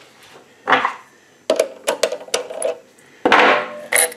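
Hard plastic pieces being handled by hand at the lathe: the freshly parted-off perspex disc and its swarf click and clink. A short rustle, then a quick run of sharp clicks, then a longer rustle near the end.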